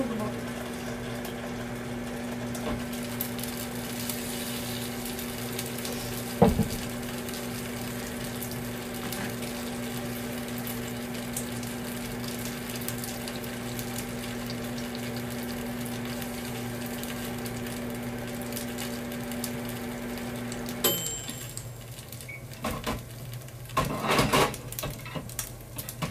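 An electrical appliance running with a steady mains hum, which cuts off suddenly with a click about 21 seconds in. A single loud thump comes about six seconds in.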